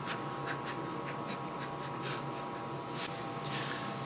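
A steady hum with faint, light scratchy sounds scattered over it.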